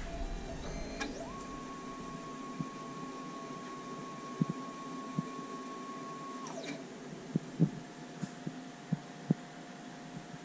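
Stepper motor driving a CNC rotary table in a test move: a whine that rises in pitch as it speeds up about a second in, holds one steady pitch for about five seconds, then falls and stops. A few light clicks follow.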